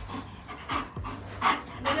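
Dog panting quickly, about three breaths a second.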